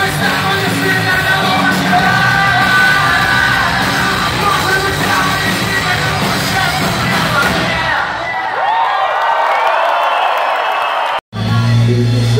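Live punk rock band playing loud, with a singer over drums, bass and guitars; about two-thirds of the way through the band stops and the crowd cheers, yells and whoops. Near the end the sound cuts out abruptly for an instant, then the band starts the next song with low bass and guitar notes.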